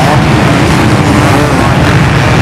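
A mass of off-road motorcycles racing past together: a loud, dense, continuous engine din, with single engines rising and falling in pitch through it.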